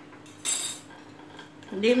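A single short, bright clink on a ceramic bowl about half a second in, with a brief ring after it.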